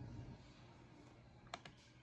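A computer mouse click about one and a half seconds in, against near silence.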